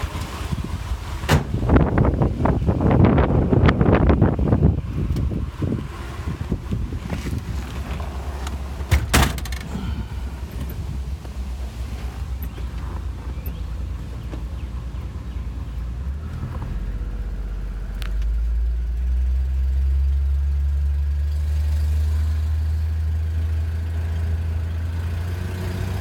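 1963 Ford Falcon's 144 cubic inch inline six running while people settle into the car, with a sharp knock about nine seconds in. From about 17 seconds in, the engine note rises and holds steady as the car pulls away.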